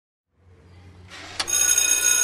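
Electric school bell ringing. It fades in over a low hum and is ringing in full from about a second and a half in, holding steady.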